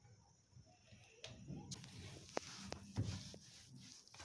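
Hands rubbing and squeezing crumbly, floury cookie dough in a bowl: a faint rustling with light clicks and taps against the bowl, starting about a second and a half in and growing louder.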